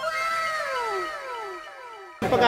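A sound effect dubbed in at an edit: a falling, whining pitched tone, echoed in several overlapping repeats that fade out.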